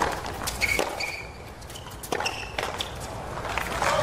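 Tennis ball knocks, from racket strikes and bounces on a hard court, several sharp hits spaced irregularly, with a few brief high squeaks of tennis shoes on the court surface.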